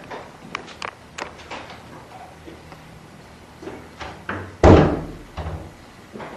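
A door slamming shut, one loud bang with a short ringing tail about three-quarters of the way through, followed by a smaller thump; a few light taps come before it.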